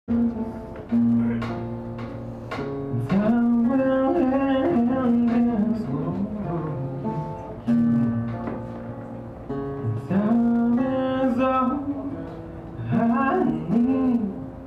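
A solo singer accompanying themselves on acoustic guitar. They hold long sung notes that bend in pitch over picked and strummed chords.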